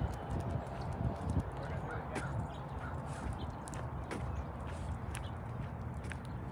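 Footsteps walking on an asphalt path, with a steady low rumble on the microphone.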